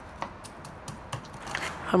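Wooden pestle pounding and grinding garlic cloves with coriander, cumin and peppercorn seeds in a wooden mortar: a series of short, irregular knocks and crunches as they are mashed into a paste.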